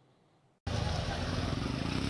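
Silence, then about two-thirds of a second in a steady outdoor street noise cuts in abruptly: an even rush with a low rumble.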